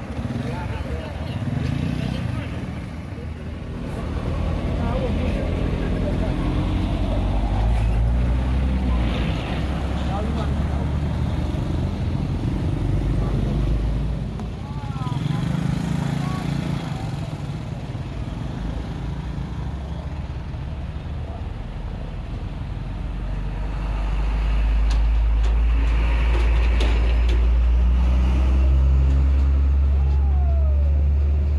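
Roadside traffic noise: the low rumble of passing vehicles swells and fades, louder over the last several seconds, with people talking indistinctly in the background.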